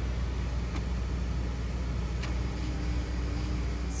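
Car engine idling, a steady low hum heard from inside the cabin, with a couple of faint ticks and a steady tone joining in the last second and a half.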